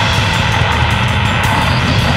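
Grindcore playing at full tilt: a dense wall of heavily distorted guitar and bass, with drums hitting in a fast, steady rhythm.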